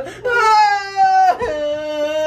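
A woman's long, drawn-out wailing cries on an "oh" sound. The first wail falls slowly, breaks off about a second in, and a lower held wail follows.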